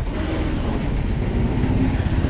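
Motor vehicle engines running close by, a steady low rumble with a faint hum that rises slightly in pitch near the end.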